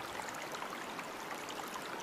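A pause in conversation filled only by faint, steady background hiss: the room tone of a small studio.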